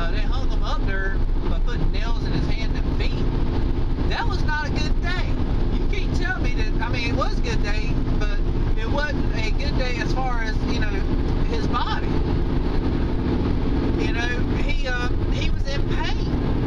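Steady engine and road noise inside the cabin of a moving car, with a man's voice talking over it.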